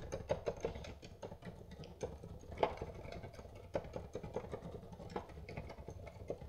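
Faint, irregular clicking and tapping on a computer keyboard, several clicks a second, over a low hum.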